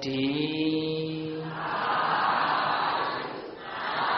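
Buddhist chanting: a man's voice holds one long chanted note for about a second and a half, then gives way to a blurred mass of several voices chanting together, with a brief dip about three and a half seconds in.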